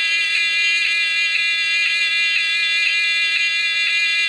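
Mego 2-XL robot toy playing a pulsing electronic buzz from its 8-track quiz tape, a steady buzzy tone pulsing about twice a second, heard through the toy's small speaker.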